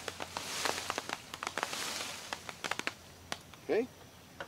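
Leafy branch of a wild black cherry tree being shaken by hand, its leaves rustling in surges about once a second that die away after about two seconds. Scattered sharp ticks run through it as small cherries drop onto a tarp.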